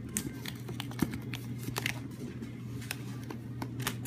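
Hands unwrapping and handling a small gift box wrapped in paper: light clicks and rustles, a handful of sharp taps scattered through, over a steady low hum.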